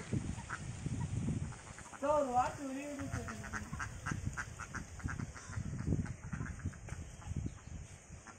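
A large flock of domestic ducks quacking, many short overlapping calls, with a longer gliding call about two seconds in.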